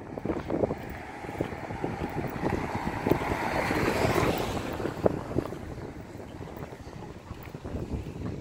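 Wind buffeting the microphone in low fluttering rumbles over outdoor street noise, with a swell of hiss that builds and fades around the middle.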